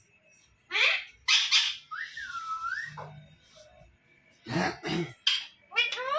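Alexandrine parakeet calling: a series of short harsh squawks and a whistled note that dips and rises, spaced by short pauses.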